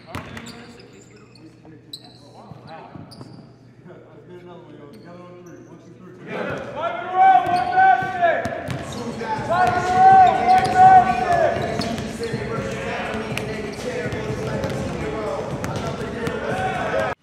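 Basketballs bouncing on a hardwood gym floor, with players' voices calling out; the gym grows loud about six seconds in, with a couple of long held shouts.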